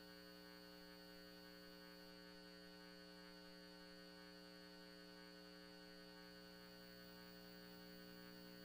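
Near silence with a faint, steady electrical hum made of several fixed tones.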